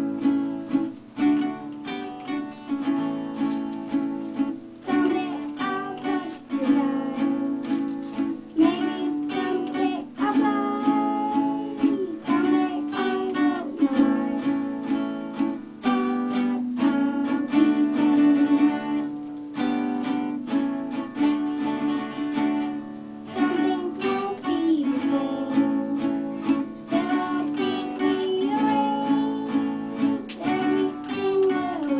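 A boy singing a song while two acoustic guitars are strummed along with him.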